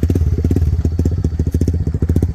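Yamaha sport bike's engine idling steadily, with an even, rapid exhaust beat.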